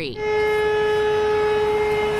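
Vehicle horn sounded in one long, steady blast at a single pitch, starting a moment in. It is most likely the stopped school bus's horn, warning a car that is driving past its extended stop arm.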